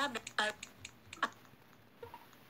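A few short, sharp clicks mixed with brief voice fragments in the first second or so, then quiet room tone.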